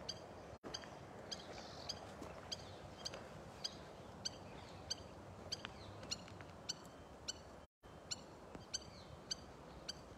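A bird repeating a single short, high chirp about every 0.6 seconds, steady and even throughout, over faint outdoor background noise.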